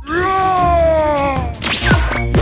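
A long, drawn-out cry, animal-like and meow-like, over the bass of electronic dance music. It lasts about a second and a half, rising slightly in pitch and then sliding down as it fades.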